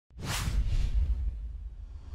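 A whoosh sound effect for an animated logo intro: a sudden rushing sweep with a low rumble under it, which fades away after about a second.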